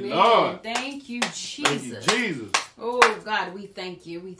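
Voices calling out without clear words, broken by several sharp hand claps.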